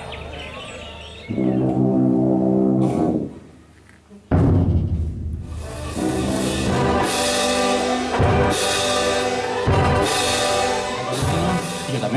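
Symphonic wind band playing. A held brass chord fades to a brief near-silence, then the full band comes in loudly about four seconds in with timpani, and sustained brass chords are punctuated by several sharp percussion strokes.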